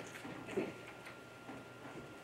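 Quiet room tone of a large meeting chamber, with a few faint clicks.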